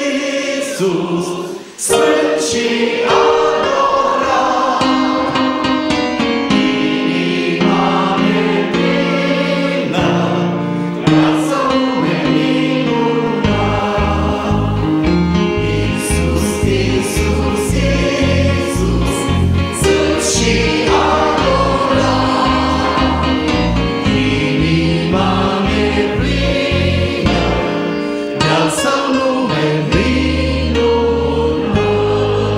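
Congregation singing a hymn refrain in Romanian together with a small group of lead singers on microphones, accompanied by an electronic keyboard. A steady rhythmic bass line comes in about halfway through.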